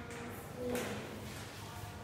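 A flashcard being flipped to the next card, a short papery swish a little under a second in, over low room noise.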